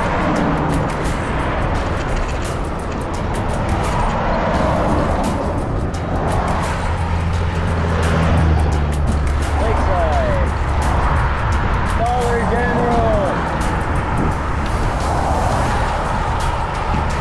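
Road noise from riding a bicycle along a highway shoulder: wind buffeting the handlebar camera's microphone, with cars and pickups passing. A vehicle's low engine rumble builds and passes in the middle of the stretch.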